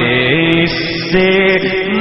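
Naat singing: a male voice holds long notes between the words of the verse, stepping up and down in pitch, with no instruments heard.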